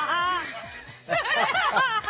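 A person laughing, chuckling in two short bouts with a brief pause between them.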